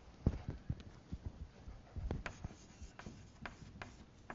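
Faint footsteps crossing the floor, then chalk tapping and scraping on a chalkboard as writing begins, heard as a series of irregular short knocks and clicks.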